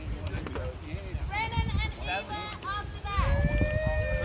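People's voices talking and calling out, some high-pitched, with one long held call starting about three seconds in. Under the voices there are a few light knocks and a steady low rumble.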